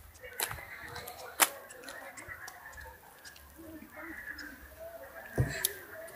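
Handling noise from a handheld camera being carried while walking: a few scattered sharp clicks and a low knock near the end, under faint voices.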